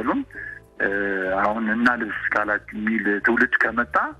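Speech from a radio broadcast, thin-sounding and cut off at the top, with faint background music underneath.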